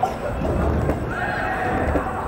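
A person's high-pitched shout, one call held for about a second in the second half, over the general noise of a soccer game in a large indoor hall.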